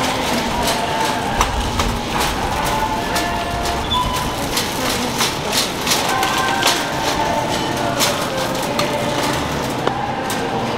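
Wire shopping cart rattling and clicking as it is pushed along the store floor, over a background of voices.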